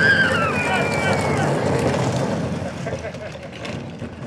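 Hard plastic wheels of a toddler's ride-on push car rumbling over asphalt, fading near the end. A child's high voice calls out in the first second or so.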